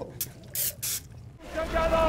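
Three short, sharp hissing bursts in the first second. Then, from about a second and a half in, a low rumble builds under a held, shouting voice.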